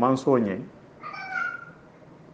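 A man's voice ends its phrase about half a second in. Roughly a second in comes a short, faint, high-pitched call lasting under a second.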